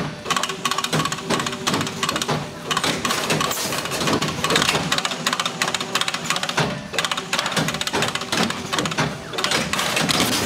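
Controls Engineering SB25 book stacker-bander running: a fast, continuous clatter of saddle-stitched books being fed along the infeed and knocked into stacks, with a steady machine tone that comes and goes.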